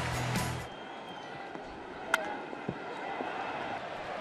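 Broadcast music and voice cut off under a second in, leaving low ballpark crowd noise; about two seconds in a single sharp crack of a bat hitting a pitch, which is popped up into the infield.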